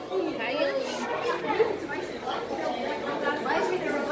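Background chatter of many people talking at once in a large indoor hall, with no single voice standing out.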